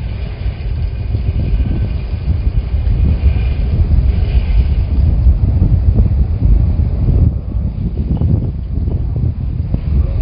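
Loud, steady wind rumble on the microphone aboard a sport-fishing boat at sea, with the noise of the boat and the water underneath.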